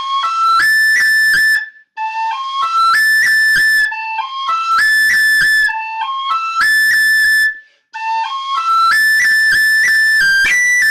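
Tin whistle playing the same short phrase about four times over. Each time it climbs in steps to a long high A that is ornamented with a long roll.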